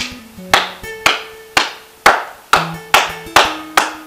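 A man clapping his hands in a steady rhythm, nine claps at about two a second, coming slightly faster near the end, over soft plucked-guitar background music.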